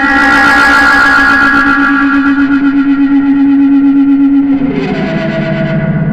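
Electric guitar played through distortion effects pedals: one long sustained, distorted note that pulses in level several times a second, then moves to lower notes near the end.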